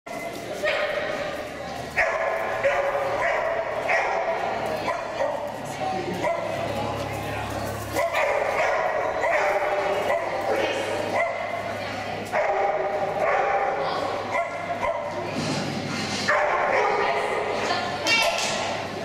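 A dog barking repeatedly in short barks and yips, over people talking.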